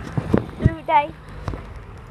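Footsteps on asphalt while walking, with a short stretch of a person's voice near the middle.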